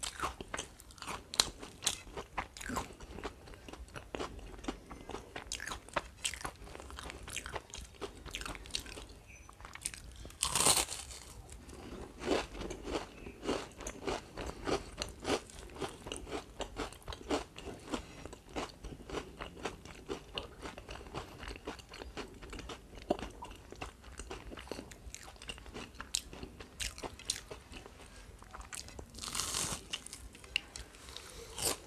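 Close-miked chewing and crunching of fried bata fish, eaten by hand, with frequent irregular mouth clicks. There are louder bursts about ten seconds in and again near the end.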